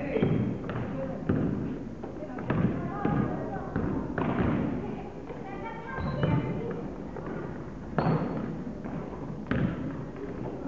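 A basketball bouncing and thudding on a hardwood gym floor at irregular intervals, with players' and spectators' voices calling out around it.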